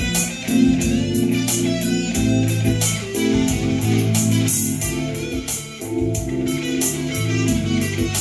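Hollow-body electric guitar playing a jazz line through an amplifier, over a walking bass line and drums keeping steady time.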